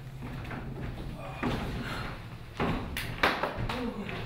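Footsteps on stage-platform steps as a man walks down them: a handful of heavy steps in the second half, the loudest about three seconds in.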